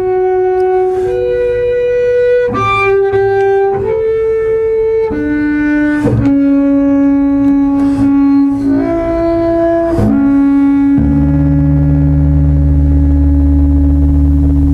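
Double bass bowed high in its range, a slow line of sustained notes changing pitch about once a second, the opposite of the low sound expected from the instrument. About eleven seconds in, a low note joins under the last long held note.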